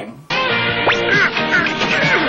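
Cartoon film soundtrack: music with short, duck-like quacking squawks, beginning about a third of a second in, with a quick rising whistle-like sweep about a second in.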